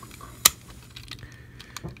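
Hard plastic parts of a transforming robot action figure clicking as a hinged assembly is unlatched and moved: one sharp click about half a second in, then a few fainter ticks.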